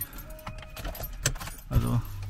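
A bunch of keys jangling, with a few short clicks and rattles.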